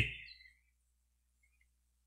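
A man's voice breaks off and its echo fades within the first moment, then near silence.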